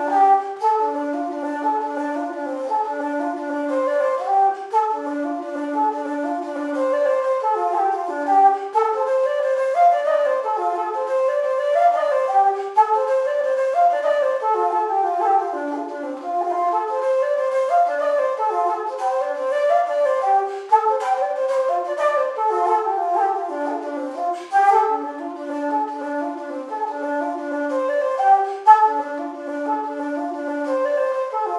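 Solo wooden Irish-style flute playing a brisk jig melody, a quick stream of separate notes with the breathy tone of a simple-system flute.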